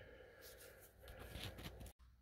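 Near silence with faint handling rustles and small clicks, cutting off suddenly just before the end.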